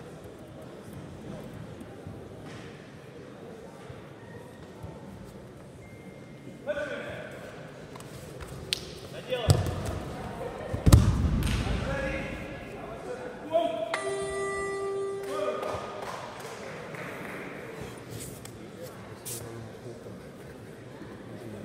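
Judoka slammed onto the tatami mat in a throw: two heavy thuds about a second and a half apart, the loudest sounds here, among shouts from coaches. Then a steady electronic scoreboard buzzer sounds for about a second and a half, marking time running out on the bout.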